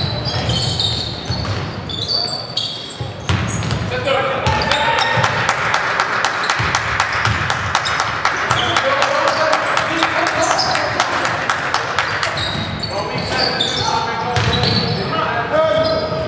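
Basketball game sounds in a sports hall: a ball bouncing on the wooden court, short high shoe squeaks, and voices shouting, with echo. Through the middle there is a fast run of sharp taps over general crowd noise.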